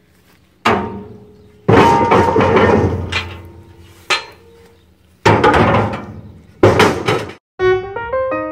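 Heavy iron stove-top plates and lid rings clanking against the iron stove, five loud strikes a second or so apart, each ringing briefly. Piano music starts near the end.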